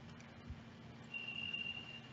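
Quiet room tone in a pause of speech, with a soft thump about half a second in and a faint, thin, steady high-pitched tone starting just after a second in.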